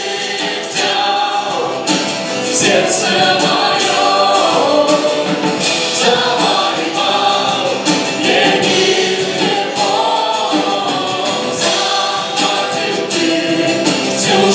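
A live worship band playing a Christian song: a woman and men singing together into microphones over strummed acoustic guitar, bass, keyboard and drums.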